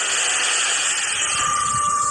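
A loud, steady hissing noise, with a held high tone coming in past the middle.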